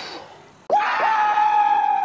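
A short rushing burst, then about two thirds of a second in a sudden loud, high scream-like yell. It starts with a couple of quick upward scoops, then is held, sliding slowly down in pitch.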